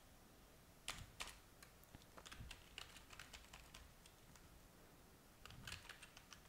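Faint typing on a computer keyboard: a run of irregular keystrokes, a short lull about two-thirds of the way through, then a quick flurry of keys near the end.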